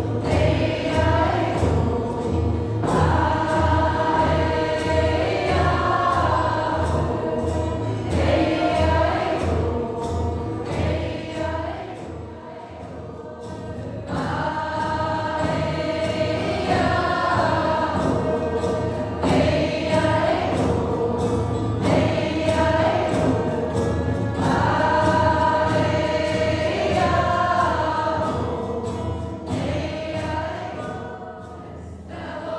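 A group of mostly women's voices singing a mantra song together, with acoustic guitar and frame drums. The drum beats about twice a second and drops away about twelve seconds in, where the singing briefly softens before it swells again.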